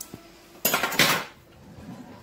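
A short clatter of hard objects knocking together, starting about half a second in and lasting about half a second, with a faint click just before it.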